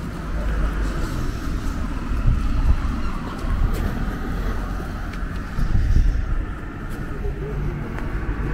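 Outdoor street ambience: a steady low rumble of road traffic, swelling slightly about two and a half and six seconds in, with a few light knocks.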